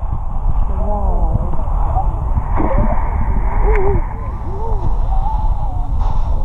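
Muffled sound recorded with the camera under water: a steady low rumble of water moving around the camera, with voices above the surface heard dully through the water, too muffled to make out words.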